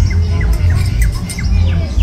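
A bird chirping repeatedly in short, falling notes over a steady low rumble.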